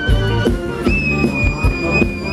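Live band playing upbeat Thai ramwong dance music: a steady drum beat under a melody line that holds one long high note from about a second in.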